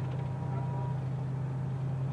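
Steady low drone of a bus engine, heard from inside the bus.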